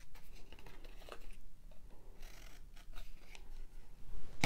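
Scissors snipping short slits into the edge of a thin cardboard circle: a series of quick, crisp cuts with brief pauses between them.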